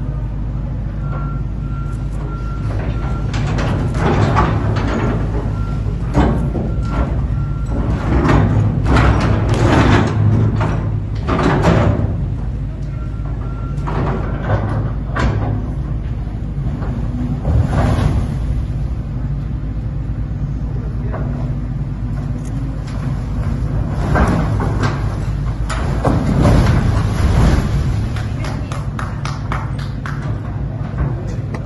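Heavy excavating machine breaking through the rock-and-earth wall between two tunnel bores: a steady engine drone with repeated scraping and crashes of rock and soil falling, heavier crashes a few seconds before the end as the wall comes down. An intermittent machine warning beep sounds in bursts in the first half.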